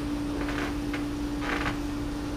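Room tone with a steady low hum, and a few faint, brief noises.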